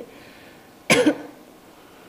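A single short cough from a commentator at the microphone, about a second in.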